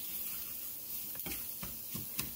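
Scrambled eggs and vegetables frying quietly in a pan as a spatula stirs them, with a couple of light spatula taps against the pan near the middle.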